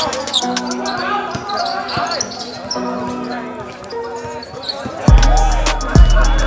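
A basketball being dribbled on an outdoor court under a music track; a heavy bass line comes in about five seconds in.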